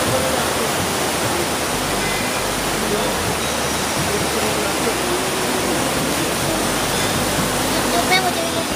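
Fast-flowing, swollen river rushing steadily: an even roar of turbulent water.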